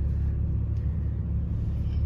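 Steady low background rumble with a faint steady hum above it: the ambient noise of a parking garage.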